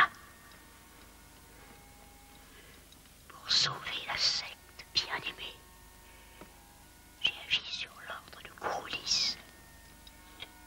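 Whispered voices in a few short bursts, about three and a half, five, seven and nine seconds in, with quiet room tone between.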